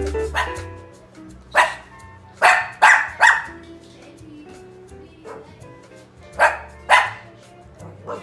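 A Shih Tzu barking: a run of four sharp barks, then a pair of barks about three seconds later.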